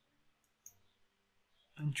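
A couple of faint, short clicks from a computer mouse in a quiet room, then a man's voice begins near the end.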